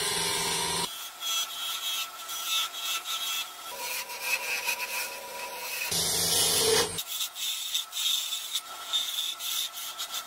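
A hand-held turning chisel cutting a spinning wooden spindle on a wood lathe, a continuous scraping hiss of shavings coming off the wood. The sound changes abruptly about a second in, and there is a fuller, heavier stretch about six seconds in.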